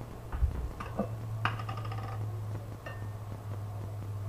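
Metal screw lid of a glass jar being worked off and set down on a stone counter: a few small clicks, then a sharp metallic clink about one and a half seconds in that rings briefly, and another light click near the end. A steady low hum runs underneath.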